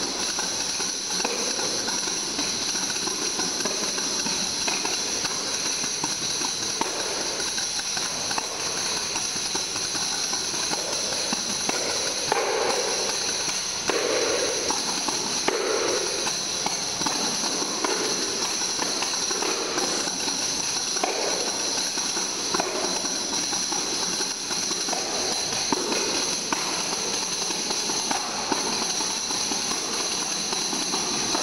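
A trio of tambourines played together: the metal jingles shake in a continuous shimmer, with rhythmic taps and hits on the drumheads, several heavier hits coming about halfway through.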